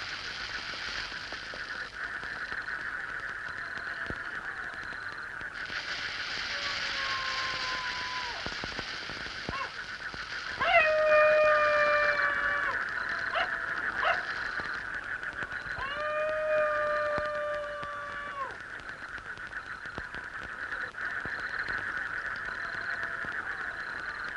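Night chorus with a steady, pulsing chirring throughout. Over it a canine howls: a faint rising howl about seven seconds in, then two long, level howls about eleven and sixteen seconds in, each lasting about two seconds.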